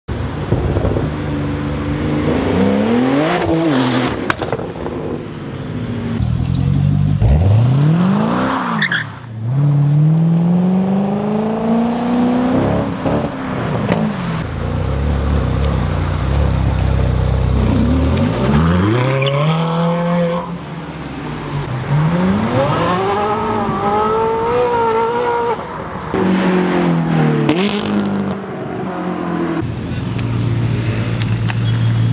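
Sports-car engines revving and accelerating away one car after another, among them a Porsche 911 Turbo and a Ferrari 458 Speciale. The engine pitch rises and drops again about six times as the cars pull away and shift gears, with a deep steady rumble in between.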